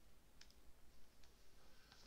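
Near silence: quiet room tone with a faint single click about half a second in.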